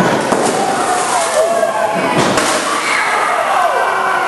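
A fluorescent light tube smashed over a wrestler, a sharp pop and shatter about two seconds in, with a smaller crack just after the start. A crowd shouts and yells over it.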